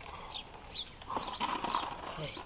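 Small birds chirping: a few short, high, falling chirps a fraction of a second apart, with faint rustling in between.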